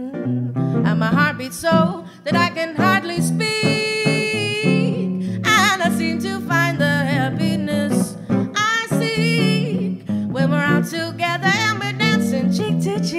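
A jazz song performed live: a female voice singing wordless lines with a wavering vibrato, including one note held for about a second and a half near the middle, over plucked guitar accompaniment.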